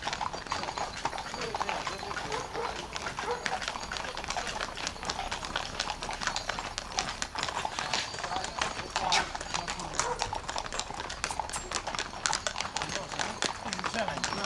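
Hooves of several horses walking on a paved lane, a steady run of irregular, overlapping clip-clops.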